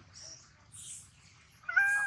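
Baby long-tailed macaque crying: a loud, high-pitched wailing cry that breaks out near the end and carries on.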